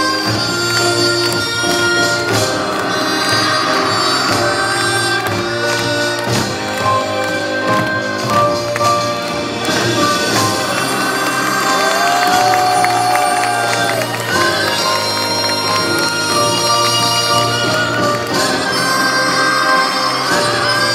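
Korean traditional performance music: held wind-instrument melody notes over steady drumming and percussion, loud and continuous.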